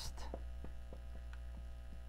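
Steady electrical mains hum, with a series of faint, irregular light ticks from a dry-erase marker writing on a whiteboard.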